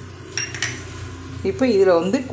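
A small kitchen vessel set down with a single sharp clink about half a second in, ringing briefly.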